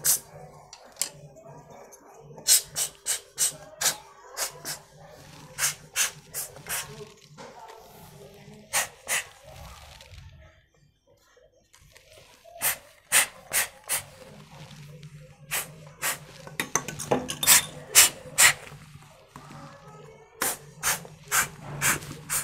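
Repeated short puffs of air from an empty plastic body-lotion bottle squeezed by hand against a power-supply fan's hub, blowing dust out of the bearing hole. The puffs come in quick runs of several, with a pause around ten to twelve seconds in.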